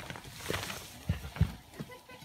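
Rock debris from a pried-off block clattering down a cliff face: a few scattered knocks and clatters that thin out, the loudest about one and a half seconds in.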